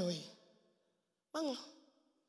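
Speech only: a woman's preaching voice ends a phrase, then after a pause of about a second gives one short voiced sound that falls in pitch.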